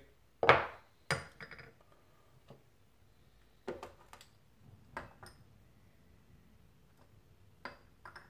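Piston-and-connecting-rod assemblies handled on a workbench and set onto a digital scale: a series of clinks and knocks of metal parts, the loudest about half a second in, several with a short metallic ring.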